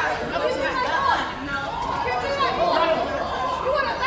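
Raised voices in a heated argument, with several people talking over one another.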